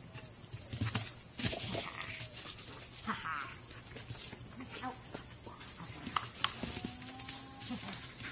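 Steady high-pitched insect chorus, with a few sharp knocks about a second and a half in. A faint voice and brief short sounds from the dog and its handler come and go.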